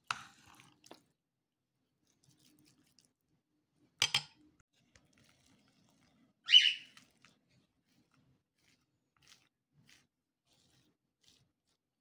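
Mostly quiet, with a few brief sounds of a plastic scraper spreading stiff pastry cream over a sponge cake layer: a sharp knock about four seconds in, a short hissing scrape about six and a half seconds in, and a few faint ticks after.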